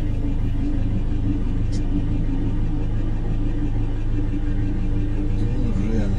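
Vehicle engine idling with a steady, even low hum, heard from inside the cab.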